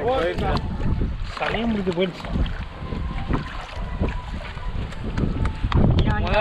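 Water splashing and sloshing as a person wades barefoot through shallow muddy water, over heavy wind rumble on the microphone, with brief voices near the start.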